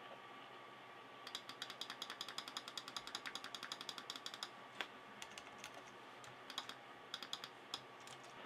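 Faint, quick clicking at a computer desk, a fast run of about eight to ten clicks a second for around three seconds, then scattered single clicks and short bursts of a few: mouse and keyboard input during rapid Spot Healing Brush retouching.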